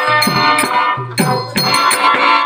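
Live folk theatre music: a hand drum playing strokes whose low note bends in pitch, under held melodic notes and jingling, rattling percussion. The music drops back briefly about halfway through, then comes in again with a drum stroke.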